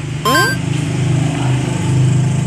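Toy police car giving out a steady, loud buzzing hum like a small motor, with a quick rising sweep about a quarter of a second in.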